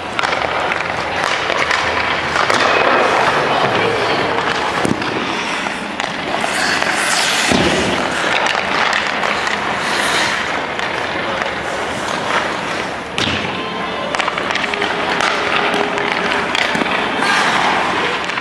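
Ice hockey practice sounds: skate blades scraping on the ice and a few sharp knocks of pucks striking sticks, goalie pads or the boards, under a continuous music bed.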